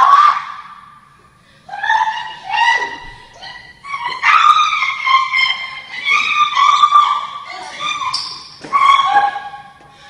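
A woman screaming in a string of high-pitched shrieks and cries, each up to about a second long with short gaps between them, during a physical struggle.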